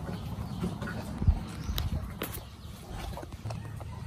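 Footsteps close by, with one heavy dull thump about a second in and a few sharp knocks after it, over a low steady rumble.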